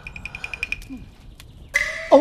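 Comic sound effects: a rapid, high-pitched pulsing tone that stops about three-quarters of a second in, then near the end a sudden bright sting with a steady high tone.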